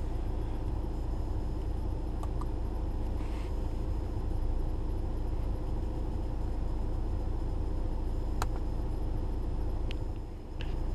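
2012 VW Jetta's four-cylinder turbo-diesel engine idling steadily in park, heard from inside the cabin. A single sharp click sounds near the end.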